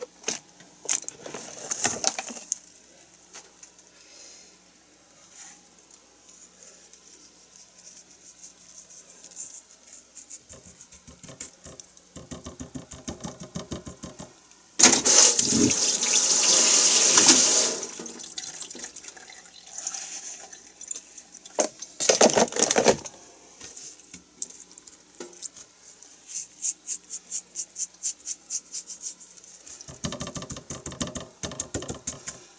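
Kitchen tap running into a sink for about three seconds midway, then a shorter gush of water a few seconds later, with light, quick ticks and clicks of handling in between.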